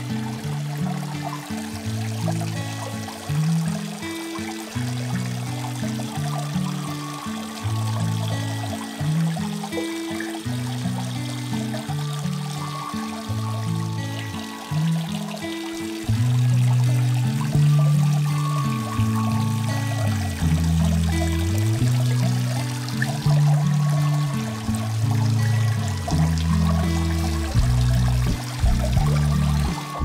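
Background music with a low, stepping bass line, which gets louder about halfway through, laid over water pouring and trickling into a pond.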